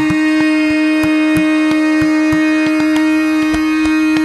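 Tabla playing a steady rhythm in a Hindustani classical performance: crisp treble-drum strokes mixed with deep bayan bass strokes that bend in pitch. Under them runs one long held note.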